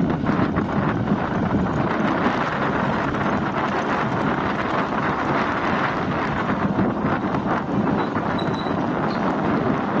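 Steady wind noise buffeting the microphone, an even rushing sound with a low rumble underneath and no clear events.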